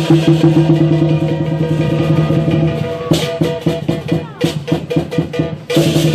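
Lion dance percussion: a large Chinese drum played in a fast steady roll with cymbals clashing. About three seconds in it breaks into separate spaced beats, and the roll returns near the end.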